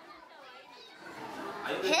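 Children's voices chattering and calling at play, faint at first and growing louder through the second half, with a young man's voice starting to speak right at the end.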